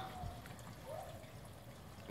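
Faint trickling of water in a garden pond, with a brief faint rising tone about a second in.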